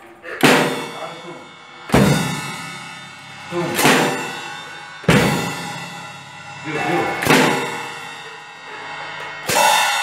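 Drum kit played slowly in separate strokes, about one every one and a half to two seconds, each crash ringing out and fading before the next. Some strokes carry a deep bass-drum thud under the cymbal.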